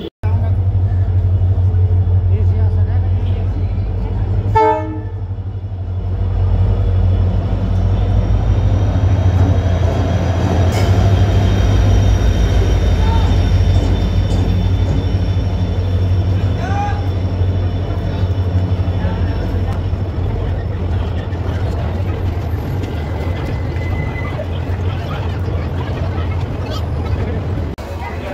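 Passenger train pulling into the station alongside the platform: the heavy low rumble of the locomotive and coaches rolling past, with a short horn toot about five seconds in. A faint high squeal and the odd metallic clank come through while it moves in.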